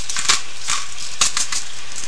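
Hand-turned pepper mill grinding black pepper over a skillet, a series of short irregular clicks, over the steady sizzle of ground beef frying in the pan.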